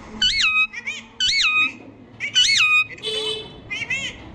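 Pet parakeet calling: three loud whistled notes that each rise and then fall, with short chattering notes between them and a harsh buzzy note near the end.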